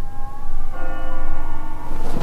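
A large bell struck, its tones ringing on, with a second strike less than a second in.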